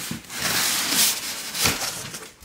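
Cardboard moving-box flaps being pulled open, the cardboard rubbing and scraping for over a second, with a couple of sharper cracks as the flaps give.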